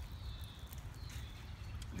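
Quiet outdoor ambience: a low steady rumble under a faint, high, slightly falling call of a distant bird, heard twice.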